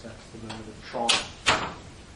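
Indistinct talking, with a single sharp knock about one and a half seconds in, the loudest sound.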